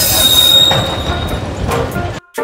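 A small rail vehicle running along the track, a loud steady noise of engine and wheels on rail, with a steady high-pitched wheel squeal through the first second and a half.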